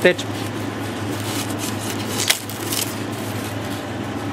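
Steady fan-like whir of running workshop equipment over a low hum, with a short knock a little past halfway as a freezer lid is lifted.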